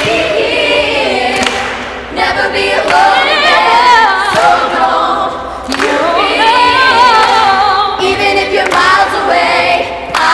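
A group of young voices singing together a cappella, with a lead voice singing wavering runs over the ensemble about three seconds in and again near seven seconds.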